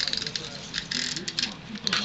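Rustling and crackling of a ribbon being pulled out and handled over paper, in two bursts: one at the start and a shorter one about a second in.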